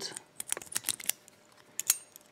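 Small sharp metallic clicks of a lock pick rocked in the brass keyway of a cheap three-pin BASTA bicycle cable lock, the pins ticking as they are set: a quick run of clicks about half a second in, then a couple more near the end.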